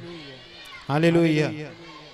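A man's voice through a microphone and PA: one drawn-out syllable with a wavering pitch about a second in, followed by a short tail of hall reverberation.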